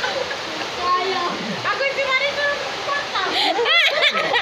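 A group of children and adults talking and calling out over a steady rushing hiss, with a child's high-pitched voice rising shortly before the end.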